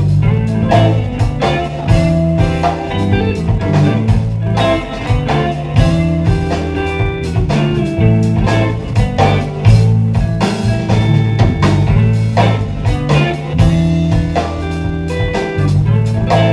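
Live funk band playing an instrumental groove: electric guitar over an electric bass line and a drum kit, with keyboards.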